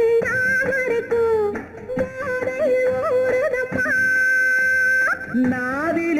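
Old Tamil film song: a sung melody in short leaping, gliding phrases over orchestral backing, with one high note held for about a second near the end.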